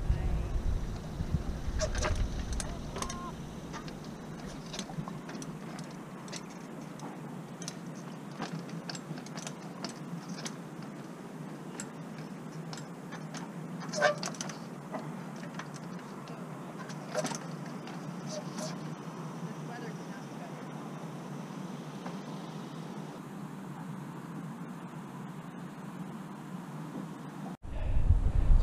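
Trials bike hopping about on granite rocks, heard from a little distance: scattered faint knocks and clicks as the tyres land and the bike's parts rattle, over a steady low background. Wind buffets the microphone for the first few seconds.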